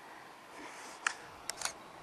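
Camera handling noise while walking: three small sharp clicks, one about a second in and a close pair near the end, over faint steady background noise.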